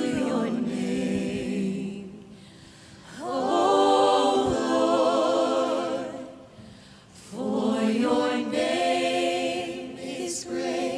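A worship choir singing together in three long held phrases, with short drops in level between them.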